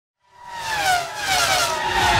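Race car engine sweeping past, its high pitch falling steadily as it goes; it fades in from silence about a quarter second in.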